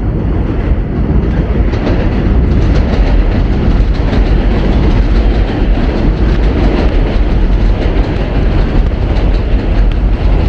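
Loud, steady low rumble with a faint rattle, building over the first second or two and then holding.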